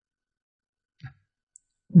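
Near silence with a faint mouth click about a second in and a tiny click about half a second later, then a man's voice starts again at the very end.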